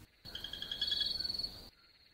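A short stretch of rapidly pulsing animal calls with a steady high chirping tone, starting sharply out of silence and cutting off suddenly after about a second and a half.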